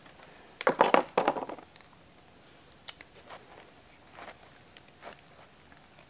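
Small plastic clicks and rustling as an RC truck's battery plug is twisted and pushed into its connector, with a cluster of clicks early on and a few light ticks after.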